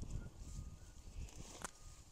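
Faint footsteps and rustling of leafy daikon radish plants as a hand reaches in among them to pull a radish, with one sharp click near the end.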